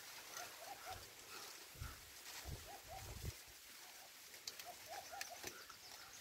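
Faint, distant animal calls: short chirps repeated in twos and threes throughout, with a few soft low thumps in the middle.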